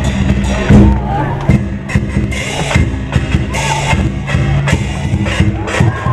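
Chinese lion dance percussion playing loudly: a large drum beating with repeated cymbal crashes over it.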